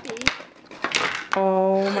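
Clear plastic toy packaging being handled and pulled open, with a sharp click early on and light rustling. It is followed by a long drawn-out "Oh" in a voice near the end.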